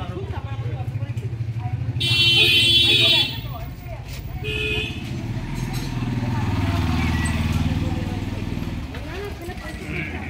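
A motor scooter's small engine idling with a steady pulse, then rising as it pulls away. A vehicle horn sounds for about a second near the start, followed by a short toot.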